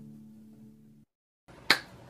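The last sustained, ringing chord of an intro jingle fading out, then a brief silence, and near the end a single sharp finger snap.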